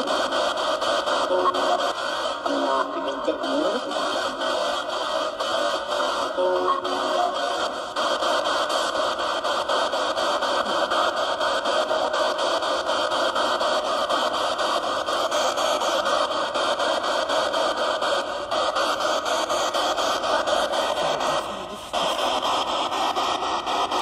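Spirit box sweeping through radio channels: a steady wash of radio static, with a faint rapid ticking from the channel sweep. Short snatches of broadcast sound come through in the first several seconds.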